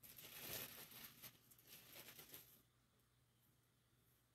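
Faint rustling and soft scratching of hands handling a plush velvet-yarn crocheted piece as stuffing begins, dying away after about two and a half seconds into near silence.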